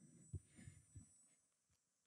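Near silence broken by a few soft, low thumps in the first second, the loudest about a third of a second in: handling noise from a handheld microphone being picked up.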